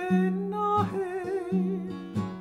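Male voice singing a Hawaiian falsetto song, holding a long vowel with a wavering vibrato, over a strummed acoustic guitar with a bass note about every three-quarters of a second.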